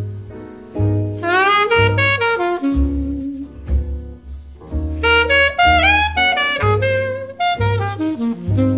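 Instrumental break in a slow jazz ballad: a saxophone plays a melodic solo line with smooth slides up into its notes, over low sustained bass notes.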